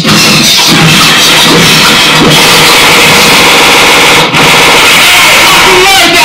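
Beatboxing through a club PA, a dense, sustained noisy vocal effect so loud it overloads the recording, with a brief break about four seconds in.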